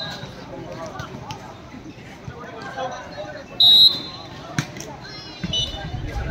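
Spectators chattering around a volleyball court, with a short, loud referee's whistle blast about three and a half seconds in and a sharp knock about a second after it.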